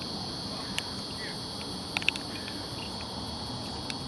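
Steady high-pitched insect chorus, with a few short sharp clicks about two seconds in.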